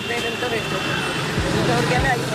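Street traffic with an auto-rickshaw's engine passing close by, under a woman talking. A steady engine hum comes up near the end.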